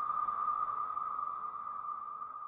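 Synthesized logo sound effect: a single held electronic tone over a faint hiss, slowly fading.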